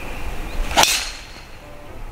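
A golf driver striking a teed ball in a full swing: one sharp crack about 0.8 s in, fading quickly.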